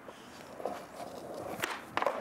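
Skateboard kickflip: quiet scuffing of feet and board, then a sharp clack of the board a little over a second and a half in, with another knock right at the end.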